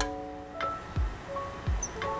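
Background music: held melodic notes over a steady beat of low kick-drum thumps.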